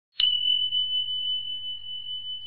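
A single high-pitched chime struck just after the start, ringing on as one clear steady tone that slowly fades: a logo-intro sound effect.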